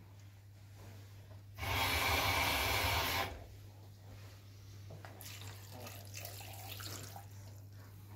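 A stream of water pouring for about a second and a half, starting a couple of seconds in, as water is added over chopped vegetables for a vegetable cream. Faint handling sounds follow.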